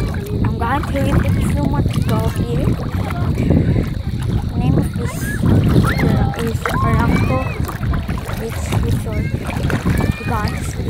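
A steady low rumble of wind buffeting the microphone over shallow sea water, with people's voices talking in the background throughout.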